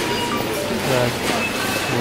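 Steady background noise of a shop floor with faint music in it, and a man saying one short word about a second in.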